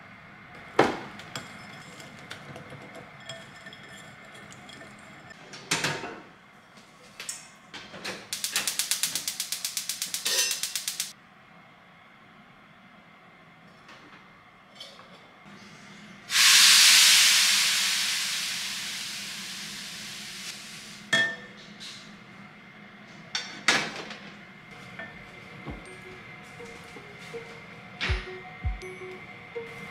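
A spoon clinking and beating fast against a glass mixing bowl, then liquid poured from a steel cup into a hot frying pan on a gas burner: a sudden loud sizzle that fades away over about four seconds, followed by a few utensil clinks.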